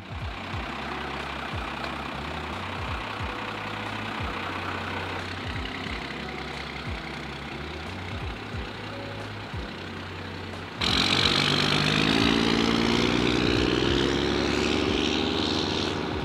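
Square-body Chevrolet Suburban's V8 engine running as the truck pulls away. About two-thirds of the way through it suddenly gets louder and the engine note climbs steadily as it accelerates.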